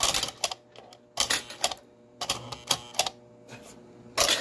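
American Flyer No. 973 operating milk car working, its milkman mechanism and small metal milk cans clattering in short bursts of clicks and knocks about a second apart.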